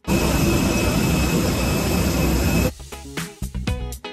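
Loud, steady jet aircraft noise with a high whine, cutting off suddenly under three seconds in; background music plays on after it.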